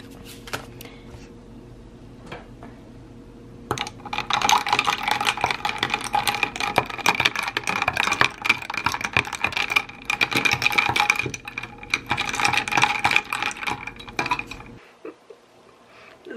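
Ice cubes clinking and rattling in a plastic cup as a spoon stirs powdered electrolyte drink mix into ice water. The dense clatter starts about four seconds in and runs for about ten seconds, then stops abruptly.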